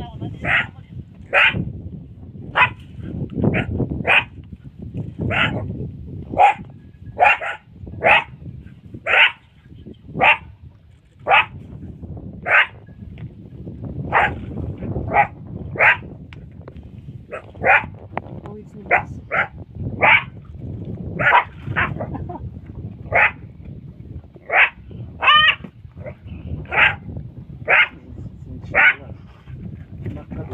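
A wild animal's short, high-pitched calls, repeated about once a second, some in quick pairs, with one call about 25 seconds in wavering in pitch. A low rumble runs underneath.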